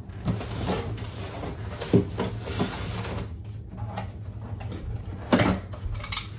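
Packing tape on a cardboard box being slit with a small blade, with a scraping, rustling noise for the first few seconds. Two knocks come from handling the box, one about two seconds in and a louder one near the end.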